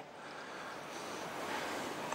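Faint, even hiss-like background noise that slowly grows a little louder, with no clicks, knocks or distinct events.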